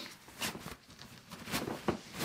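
Fabric rustling as backpack straps are crammed inside a fitted rain cover, in several short bursts of handling, with a sharper click near the end.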